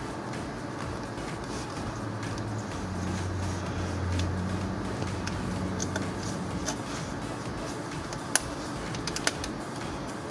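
A thin screwdriver working the metal spring clip on a radiator hose, heard as a few light clicks near the end, over a low steady hum.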